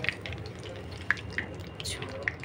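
Hot frying oil left in a kadai after the kababs are lifted out, sizzling with scattered small pops and crackles, and a sharper click near the end.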